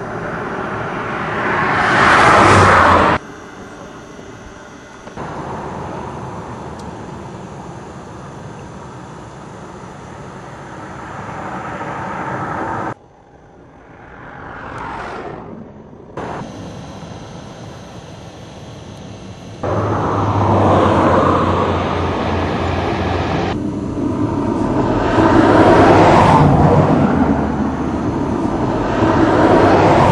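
Road vehicle noise across several abruptly cut clips: swells that rise and fade like vehicles passing, and loud steady rumbling stretches.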